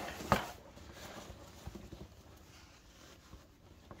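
Handling noise of a nylon backpack and its frame being worked together: one sharp click about a third of a second in, then faint rustling and small ticks that die away.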